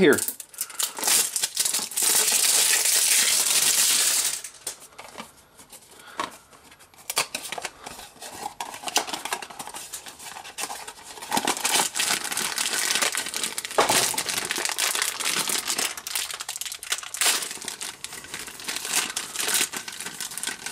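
Packaging of a blind-box figure being unwrapped and opened. A loud stretch of crinkling and tearing comes about two seconds in, then quieter handling of the cardboard box, then a foil bag crinkling through the second half.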